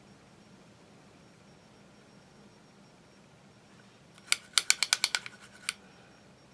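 Quick run of about eight sharp clicks from a makeup brush tapping against an eyeshadow palette as it picks up powder, then one more tap a moment later. The clicks start about four seconds in, after faint room tone.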